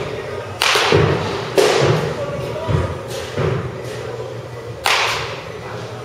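Sharp knocks of baseballs being hit and slamming into the batting cage, echoing in a large indoor hall. Three loud hits come about half a second in, about a second and a half in and near the end, with softer knocks between them.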